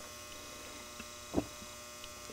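Steady, faint electrical hum, with one short soft thump about one and a half seconds in.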